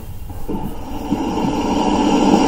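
Steady background hum and hiss on an open video-call microphone, slowly growing louder.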